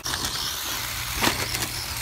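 Traxxas short-course RC truck driving over loose sand and dirt: its electric motor whining over the noise of the tyres, with one sharp knock about a second and a quarter in.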